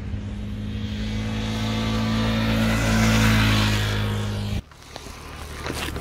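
KTM RC390's single-cylinder engine running at a steady pitch, growing louder over the first three seconds. It cuts off suddenly about four and a half seconds in.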